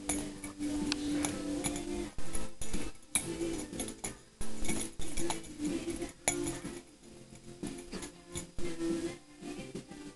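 Music with held notes, overlaid with frequent short, sharp clinks.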